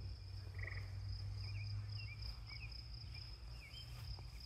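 Crickets calling in a steady, high, evenly pulsing chorus, with a few short faint bird chirps in the middle, over a low steady rumble.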